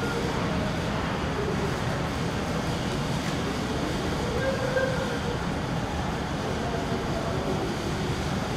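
Steady rumble of jet aircraft engines on an airport apron, with a faint whine rising above it about halfway through.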